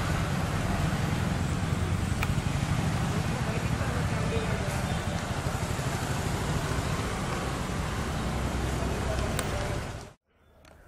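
A departing diesel-hauled express train rolling away down the track: a steady rumble of coaches on the rails with the low throb of its twin Alco WDM-3D diesel locomotives at the head.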